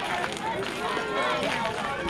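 Overlapping voices of softball players and spectators calling out and chattering, with no single clear speaker.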